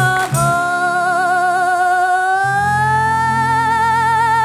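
A woman singing a Russian song and holding one long note with wide vibrato, rising a little in pitch midway, over a guitar and band accompaniment. The backing grows fuller about two and a half seconds in.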